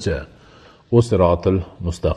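A man's voice speaking in a recorded lecture: speech with a short pause partway through.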